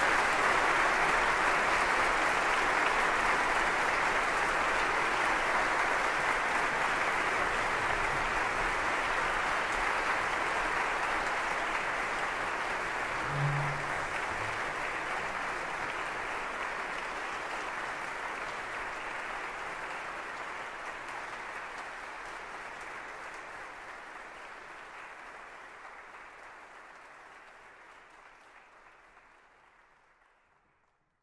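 Audience applauding, the clapping fading away steadily until it is gone.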